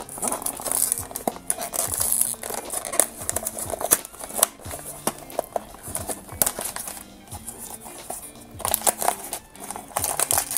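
A small cardboard blind box being picked and torn open by fingernails: its seal tearing and its flaps opening in a run of short crinkles and clicks, then the foil pouch inside crinkling near the end. Quiet background music plays under it.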